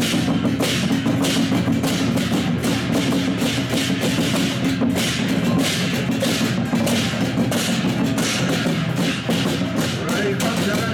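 Taiwanese procession drum-and-cymbal ensemble (jiao-qian-gu, the drum troupe that leads a deity's sedan chair) playing loudly. A large barrel drum is carried on a pole, and many pairs of hand cymbals clash together about twice a second over continuous drumming.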